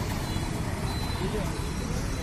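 Street noise: traffic with indistinct voices, a dense steady din.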